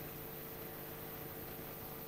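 Steady hiss with a faint electrical hum, the background noise of the hall's microphone and sound system; no other distinct sound.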